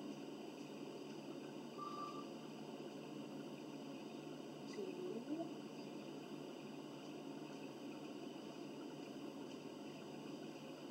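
Faint, steady room noise with a brief high beep about two seconds in and a short wavering sound around five seconds in.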